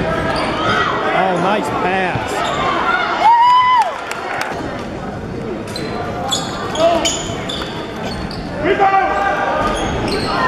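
Live basketball game in a gym: a basketball bouncing on the court among spectators' and players' voices and shouts. A single held high-pitched note lasts about half a second, a little over three seconds in.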